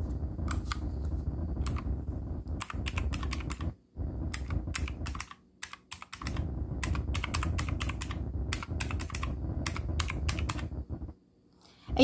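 Round plastic keys of a desktop calculator being pressed in quick runs of clicks, broken by a few short pauses.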